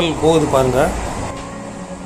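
Steady running noise of a moving MEMU electric train heard from inside the carriage, with a person's voice briefly over it in the first second.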